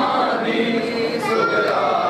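A group of men chanting a mourning lament together, many voices overlapping in a held, sung chant, as in a nauha at a Shia matam gathering.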